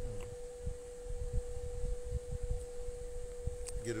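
Irregular low rumbles of wind buffeting the microphone, over a steady faint pure tone that holds one pitch throughout.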